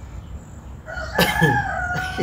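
A rooster crowing: one long call beginning about a second in, its pitch falling slightly as it goes.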